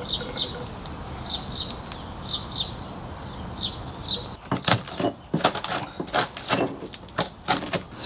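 Metal tool scraping and knocking into a rotten timber weatherboard: from about halfway, a quick irregular run of clicks and scrapes as the soft wood breaks away. Before that, a bird chirps in short pairs over a steady low background.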